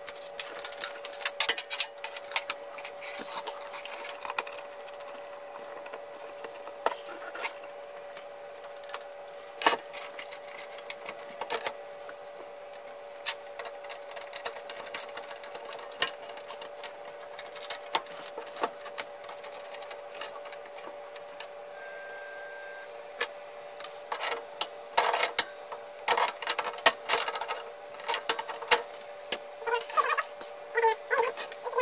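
Clicks and knocks of a Dentron MT3000A antenna tuner being handled and set back in place on a desk, busiest in the first few seconds and again near the end. A steady tone sounds throughout, with a short higher beep partway through.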